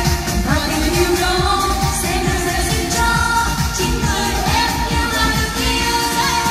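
A woman singing a pop song into a microphone over an amplified backing track with a steady beat.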